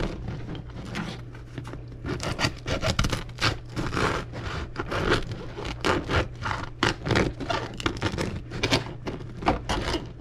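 A knife sawing through a crusty sourdough loaf on a plastic cutting board: repeated rasping strokes, roughly two a second. The knife is an ordinary one rather than a proper bread knife.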